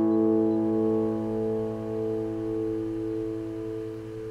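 Acoustic guitar's final chord ringing out and slowly fading away, with a slow pulsing waver in the sustained notes and no new strums.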